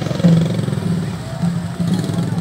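Street parade noise: motorcycle engines running among a talking crowd, with a drum beat pulsing in the background.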